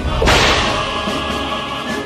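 A sudden swish sound effect about a quarter second in, fading away over about a second, laid over background music.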